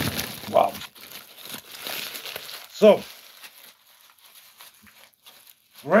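Foil-lined paper sandwich wrapper crinkled and crumpled by hand, busiest in the first couple of seconds and fainter after.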